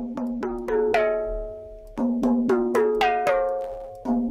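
A melodic sample loop of short struck or plucked, mallet-like notes over a held low tone, its phrase repeating about every two seconds. It plays back through FL Studio's Fruity Stereo Enhancer widening plugin while the phase offset is being turned up.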